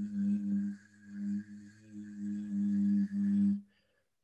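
A voice holding a voiced velar fricative [ɣ], the throaty 'gh' made with the back of the tongue raised at the 'g' position while the voice stays on. It is held at one steady pitch, wavering in loudness, and stops suddenly about three and a half seconds in.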